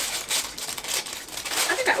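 Plastic packaging crinkling and rustling in irregular bursts as it is handled and pulled open. A word is spoken near the end.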